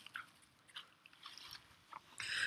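Near silence, with a few faint short crunches and rustles.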